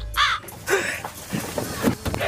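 A crow cawing once, a short harsh call near the start, followed by a few fainter, lower sounds.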